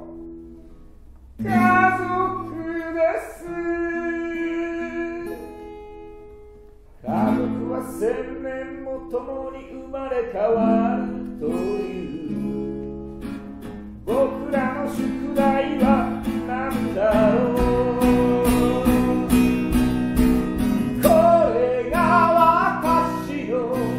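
A man singing a song in Japanese to his own guitar, with held notes and short pauses between phrases. About two-thirds of the way through, the strumming becomes fuller and louder.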